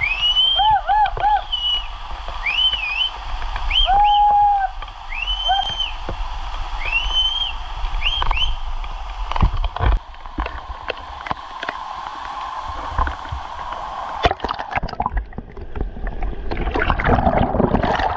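Steady rush of a waterfall, with a run of short whistles rising and falling in pitch through the first half. About ten seconds in there is a thud, and near the end the microphone goes underwater: clicks and gurgling bubbles.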